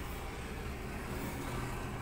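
Steady low rumble of vehicle and traffic noise heard from inside a car's cabin.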